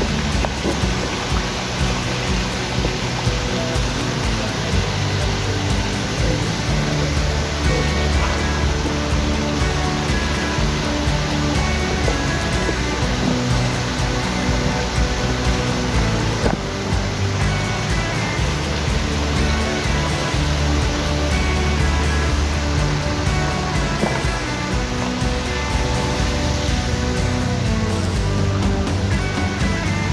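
Background music with sustained bass notes, over a steady hiss.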